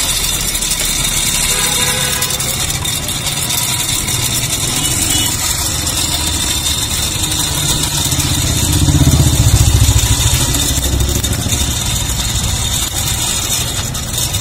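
Hand-cranked cast-iron blower whirring steadily, forcing air through a pipe into a charcoal brazier to fan the fire, with a louder stretch about nine seconds in.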